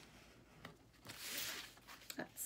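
Hands creasing a sheet of paper folded in half, sliding along the fold: a light tap, then a short rubbing swish about a second in.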